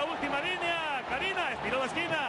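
Speech only: a man commentating on football in Spanish, talking without a break.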